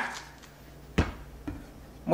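A single sharp knock about a second in, followed by a fainter knock about half a second later, over a low steady room hum.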